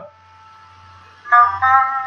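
Solo instrumental background music: a faint held note for about a second, then a short melodic run of single notes stepping in pitch, over a low steady hum.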